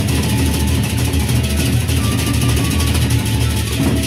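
Gendang beleq ensemble playing: large Sasak barrel drums beaten in a fast, driving rhythm under a continuous dense crashing of hand-held cymbals.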